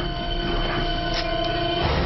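Dramatic film sound design: several held, dissonant tones at different pitches over a loud, noisy rumble, cutting off just before the end.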